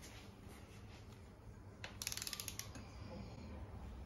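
Ratchet head of a torque wrench clicking as its handle is swung back on a nut: a quick run of about a dozen clicks about halfway through, otherwise faint background.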